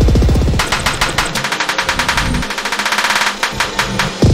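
Live-coded electronic music from TidalCycles: a rapid-fire stream of stuttering percussive sample hits, heavy with bass in the first moments, the bass dropping out for about a second in the second half while the fast clicks go on.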